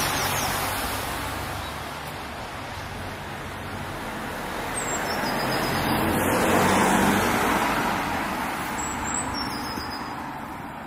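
Road traffic: one car passing fades out at the start, then another approaches and goes by, loudest about seven seconds in, with tyre noise and low engine hum. Faint bird chirps are heard over it.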